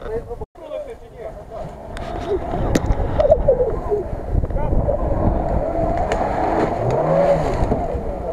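A car engine revving hard under load as the car is driven through deep mud, the engine note climbing and dropping again near the end, with voices of onlookers around it.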